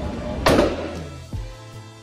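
A single loud gunshot about half a second in, ringing on briefly in the indoor range, over background music; a fainter knock follows about a second later.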